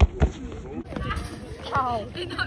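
A ball kicked on a hard court: two dull thumps about a quarter second apart right at the start, followed by distant voices of players.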